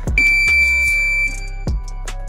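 A single high electronic beep, held steady for about a second, over background music with a drum beat. It works as a round-timer alert marking 30 seconds left in the round.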